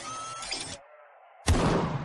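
Logo-animation sound effects: a mechanical clicking and ratcheting texture, a short hush, then a sudden loud gunshot-like boom about one and a half seconds in that rings away.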